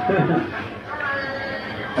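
A person laughing, mixed with talk.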